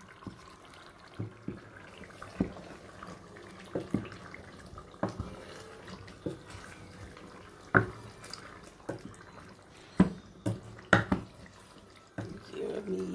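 A wooden spoon stirring a thick tomato stew in a pot, making wet, sloppy sounds. Irregular knocks of the spoon against the pot come every second or so, a few of them sharper about two-thirds of the way in and near the end.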